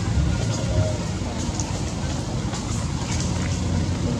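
Steady low rumbling background noise.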